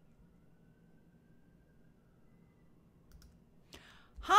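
Near silence with faint room hiss, then a few short clicks about three seconds in and again just before the end.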